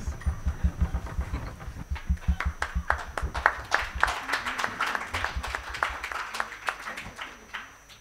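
Applause: many people clapping, the claps thinning out and dying away near the end.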